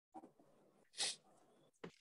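A quiet pause holding a short, faint breath into a microphone about a second in, with two tiny clicks around it.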